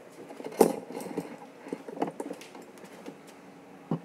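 Handling noise from a phone camera being picked up and moved: a sharp knock about half a second in, then scattered light clicks and rubbing, with a last knock near the end. A steady low hum runs beneath.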